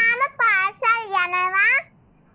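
A young child singing in high, drawn-out notes, stopping shortly before the end.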